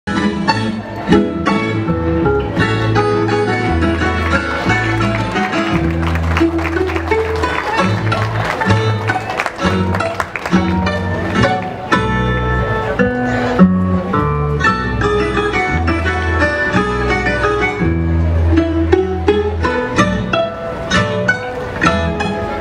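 String-band music for a folk dance, with fiddle and guitars playing a lively, steady tune over a moving bass line.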